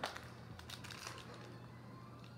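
Faint clicks and crinkling of scissors cutting open a plastic candy wrapper, with a sharp click at the start and a low steady hum beneath.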